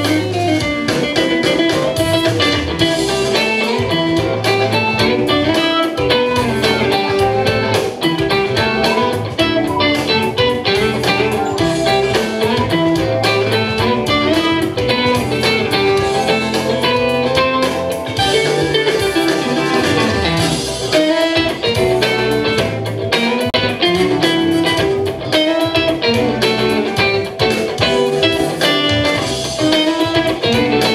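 Amplified electric guitar played solo, a continuous stream of picked notes and chords with a blues feel.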